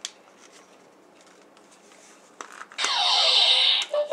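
Electronic phaser sound effect from a Diamond Select Star Trek II hand phaser toy, played through its small built-in speaker: a click, then about three seconds in, a loud buzzing hiss with falling whistling tones lasting about a second.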